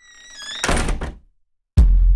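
Door sound effect: a short high creak as the door opens, then a rush of noise as it swings. After a brief silence, a deep thud comes near the end.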